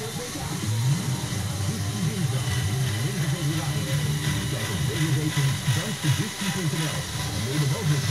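Electric drive motors of a LEGO trail jeep running steadily as it crawls over logs, with voices talking in the background.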